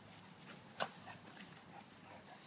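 Dogs play-wrestling on grass, mostly quiet scuffling, with one brief sharp sound from the dogs just under a second in.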